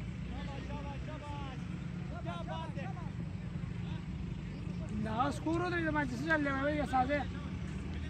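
Men's voices calling out across the field, loudest from about five to seven seconds in, over a steady low rumble.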